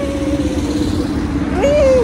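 Street traffic with a steady engine-like hum and low rumble, under a woman's drawn-out excited shout in the first second and a short second exclamation near the end.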